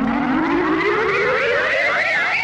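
An edited-in comedy sound effect: a siren-like tone rising slowly and steadily in pitch, with a wavering warble above it.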